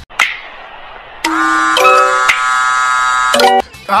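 A phone ringtone: a synthesized melody of held notes that starts a little over a second in, changes pitch a couple of times over about two seconds, and ends in a few quick short notes.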